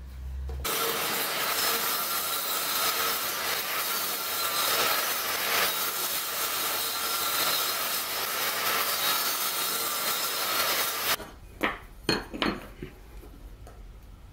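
Table saw running and crosscutting small wooden blocks on a crosscut sled, a loud, steady whine under the cutting noise. It starts and stops abruptly, and a few sharp knocks follow near the end.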